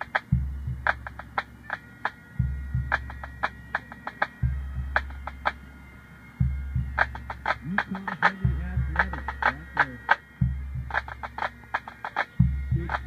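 Pipe band drum corps playing a drum salute: sharp snare drum strokes in quick patterns, with tenor drums and a bass drum struck about every two seconds, each bass stroke ringing on.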